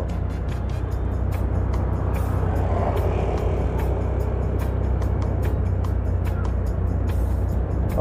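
Motorcycle riding at a steady speed on a paved street, its engine and road noise running evenly, with background music.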